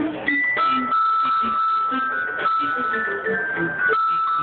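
A small ensemble of recorders and bassoon plays a medieval-style piece, with long held high recorder notes over a moving lower line.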